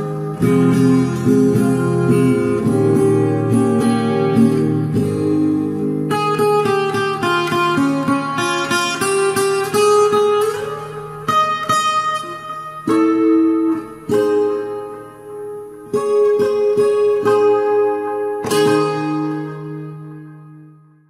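Acoustic guitar played solo, plucked notes and chords ringing out, fading away near the end.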